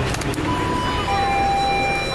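Electronic shop-door entry chime: a steady higher tone about half a second in, then a lower tone held for about a second.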